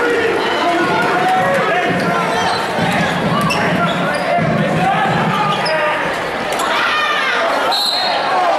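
Basketballs dribbling on a gym floor, with many short bounces amid players' voices calling out during a team drill.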